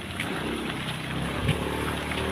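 Outdoor ambience dominated by a steady low engine hum of motor traffic, with a faint knock about one and a half seconds in.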